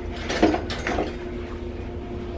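Rustling and handling of a plastic grocery bag and packaged items, loudest about half a second in, over a steady low hum.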